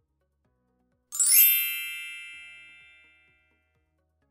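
A single bright, bell-like ding used as a transition sound effect. It is struck about a second in and rings out, fading away over about two seconds.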